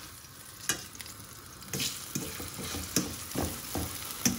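A metal fork clinks and taps against a speckled enamel pan as tomato pieces are pushed around in hot olive oil, over a light sizzle. There is one sharp clink about two-thirds of a second in, then a run of taps in the second half.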